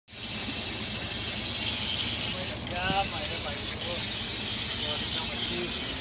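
Steady noise of wind and sea water around a small fishing boat, with a short human voice about three seconds in.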